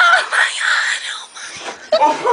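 A woman's high-pitched wailing cry, trailing off into breathy squeals that fade toward the end.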